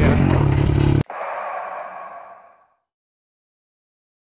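Dirt bike engine running under way with wind noise, cut off abruptly about a second in, followed by a short rushing sound that fades out.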